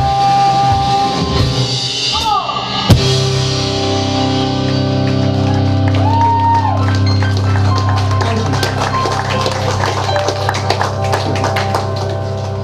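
Live rock band of stage piano, electric guitars, bass and drum kit playing. A loud crash comes about three seconds in, then the band holds a chord with a bending guitar note while the drummer plays rapid cymbal hits.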